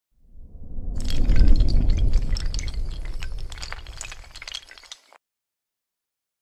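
Logo-animation sound effect: a low rumble swells in, and from about a second in a dense scatter of sharp clicks and crackles rides over it. Both fade and stop about five seconds in.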